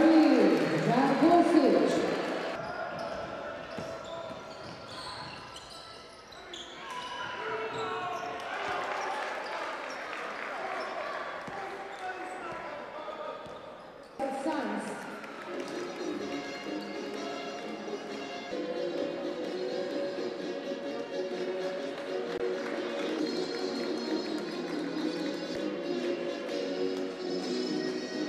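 Basketball game sound in a sports hall: a crowd chanting in unison at first, fading into ball bounces and crowd noise. A cut brings a sudden louder burst of crowd about halfway through. Steady music takes over in the last part.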